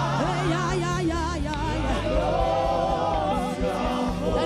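Live gospel song: a small group of vocalists singing in harmony, with wavering held notes, over a band with steady bass and drums.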